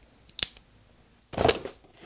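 A folding multitool clicks sharply once as it is opened, then about a second later its blade slits the packing tape on a cardboard box in a loud, noisy cut.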